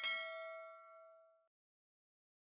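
Notification-bell chime sound effect for a clicked bell icon: a single bell ding that rings out over several pitches, fades, and stops about one and a half seconds in.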